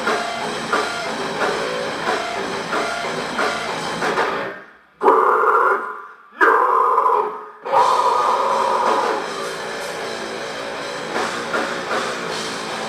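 Heavy metal/hardcore band playing live: distorted guitars, bass and drum kit. About four and a half seconds in the band cuts out, then comes back in three loud stop-start bursts with short silences between, before the steady riff resumes.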